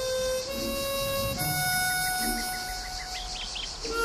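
Harmonica music: a slow melody of long, held notes that change pitch every second or so.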